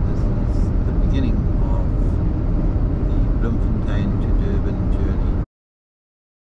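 Steady road and engine noise heard from inside a car cruising at highway speed, a heavy low rumble, cutting off abruptly about five and a half seconds in.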